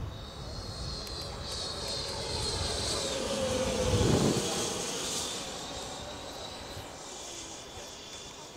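Schubeler 120 mm electric ducted fan of a Sebart Avanti XS model jet flying past: a high whine that swells to its loudest about four seconds in, drops in pitch as it passes, then fades away.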